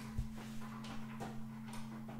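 Faint knocks and clicks of a camera being handled and set up, the sharpest one just after the start and a few softer ones later, over a steady low hum.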